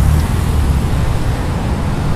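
A steady low rumble with a faint hiss above it, the background noise of a city street.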